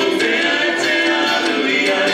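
A group of voices singing a Samoan song together in chorus, with a steady light beat underneath.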